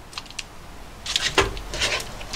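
A metal spoon scraping around a frying pan as thick white-sauce gratin mixture is scooped out, in short rasping strokes from about a second in, with one sharp knock of the spoon partway through.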